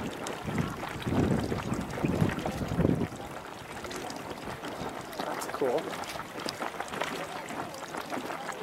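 A small geyser's pool splashing and surging in rough bursts for the first three seconds, then quieter. A person's voice is heard briefly a little past halfway.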